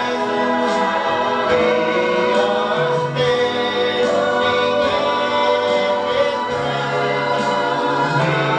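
A man and a woman singing a gospel song together as a duet, holding long notes.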